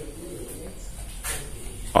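Faint cooing of a dove in the background during a quiet pause, with a brief higher call a little past the middle.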